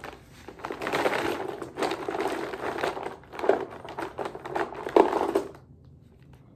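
Lip balm tubes rattling and rustling as a hand rummages through a bucket of them held close to the microphone, with louder clatters midway and near the end.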